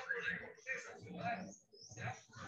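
Indistinct voice talking and laughing, heard over a video call.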